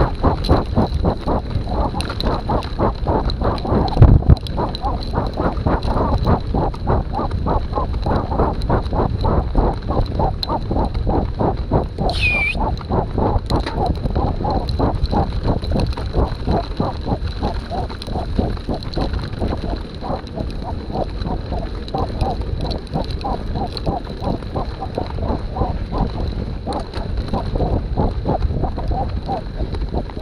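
Mountain bike rolling fast over a sandy, rutted dirt track behind a running dog, with quick, even, rhythmic hard breathing and a low rumble of tyres and bike. A brief high squeak falling in pitch a little before halfway.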